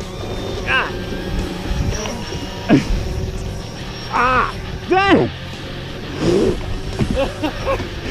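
Men's short wordless whoops and exclamations, each rising and falling in pitch, about five times, over background music with a steady low hum.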